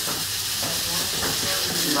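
Prawns frying in a hot pan: a steady, even sizzling hiss.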